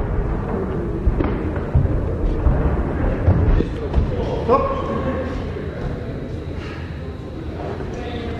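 Dull thuds of gloved punches and kicks landing in a savate bout, several in the first four seconds, over shouting voices from around the ring.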